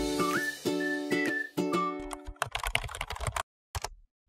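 Background music with a gliding melody line, ending about two seconds in. A quick run of keyboard-typing clicks follows, a typing sound effect, then a gap and a couple of last clicks.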